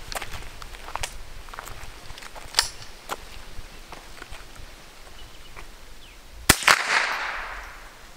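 Scoped .22 rifle test-fired once about six and a half seconds in: a sharp crack with an echo that fades over about a second, showing the rifle still works after its case was run over. A sharper, shorter click comes about two and a half seconds in.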